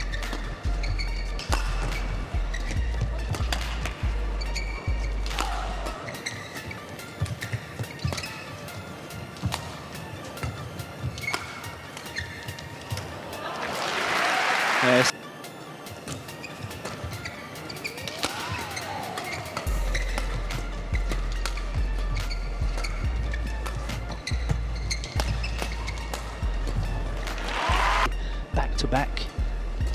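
Background music with a bass beat that drops out for a stretch in the middle and a rising swell that cuts off sharply about halfway through. Sharp racket hits on the shuttlecock from a badminton doubles rally run underneath.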